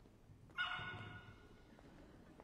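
A pet animal gives one short, pitched cry about half a second in, which fades over the next half second and rings on faintly in the large church.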